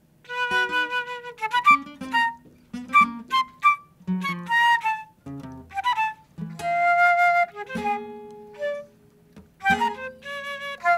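Flute playing short phrases over plucked acoustic guitar notes, with one longer held flute note a little past the middle and brief pauses between phrases.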